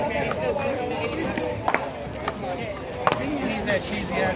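Two sharp cracks of paddleball paddles hitting the ball, about a second and a half apart, with men's voices talking and calling out throughout.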